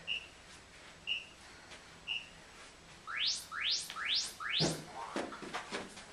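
Interval-timer app counting down: three short high beeps a second apart, then four quick rising electronic sweeps that signal the start of a 20-second work interval. Feet then thud several times on the carpeted floor as jump squats begin.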